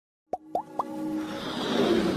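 Animated-logo intro sound effects: three quick plops, each with a fast upward pitch glide, about a quarter second apart, then a swelling whoosh that builds steadily louder.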